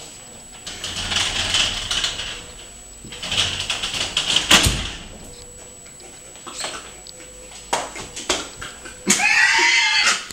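A sliding door run along its track twice, the second run ending in a hard thud about halfway through, followed by a few light knocks. A voice comes in loudly near the end.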